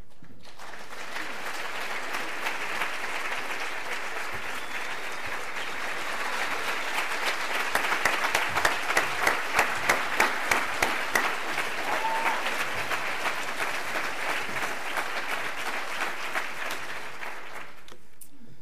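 Audience applauding in a hall, a dense patter of many hands starting about half a second in and stopping just before the end, with a few seconds of louder, evenly spaced claps near the middle.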